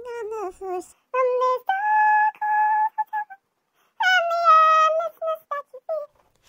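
A woman singing unaccompanied, sped up to a high chipmunk pitch. Short sung phrases with two long held notes, about two and four seconds in, are broken by brief pauses.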